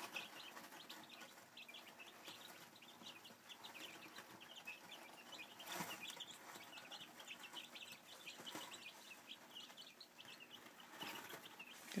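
A brood of week-old Silkie chicks peeping softly and without pause, many short chirps overlapping, with a couple of faint knocks about halfway through.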